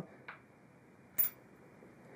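A faint tick, then a single sharp click a little over a second in: a small metal cutter head knocking against the rosette cutter's metal base plate as it is taken out.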